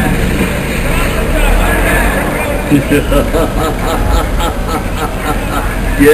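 Loud, dense low rumble with indistinct voices mixed in.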